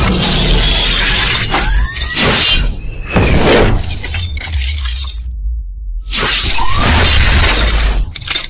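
Cinematic logo-animation sound effects: a series of loud whooshing hits and glassy, shattering crashes over a continuous deep bass rumble, with the biggest crashes near the start, around three seconds in and around six seconds in.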